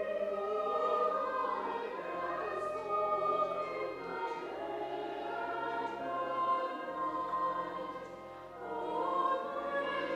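Church choir singing a slow piece in a reverberant church, sustained notes moving every second or two, over held low notes beneath.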